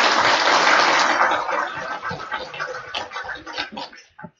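Applause right after the class is dismissed: a dense burst of clapping that thins out over a few seconds into a few scattered claps.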